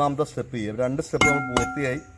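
A man talking, with one sharp metallic clink about a second in that rings on briefly: the cooking spatula knocking against the rim of the metal curry pot.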